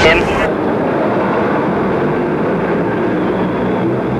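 A heavy truck's engine running steadily, as a steady noisy rumble.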